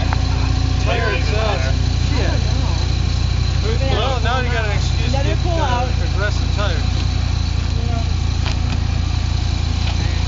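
Hummer's engine idling steadily, a low rumble beneath the overlapping voices of several people talking around it.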